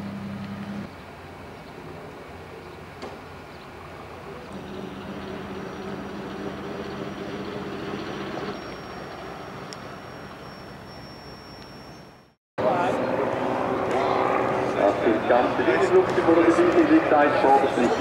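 Piston engines of vintage biplanes running steadily at taxi idle, a low even drone. After an abrupt cut about two-thirds through, a louder, wavering mix of sound takes over.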